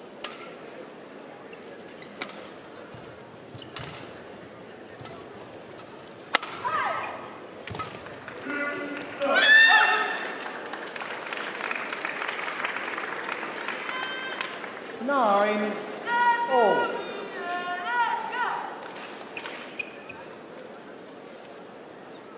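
Badminton rally: a string of sharp racket strikes on the shuttlecock. About six and a half seconds in, the rally gives way to loud shouting, with the crowd cheering and applauding, as the point is won.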